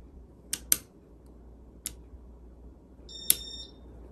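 1988 Casablanca Spirit of Saturn ceiling fan running with a steady low hum. Sharp switch clicks sound as its light kit is turned on and off: two close together about half a second in, one just before two seconds, and one a little after three seconds. The last click comes with a brief high-pitched beep.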